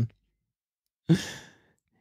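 A person's short sigh, about a second in, starting with a brief voiced catch and fading out over about half a second; silent on either side.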